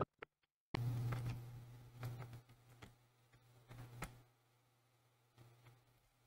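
Faint clicks and light rustles of hands handling multimeter probe leads and the small wired power jack. A low steady hum comes in suddenly about a second in and fades after about four seconds.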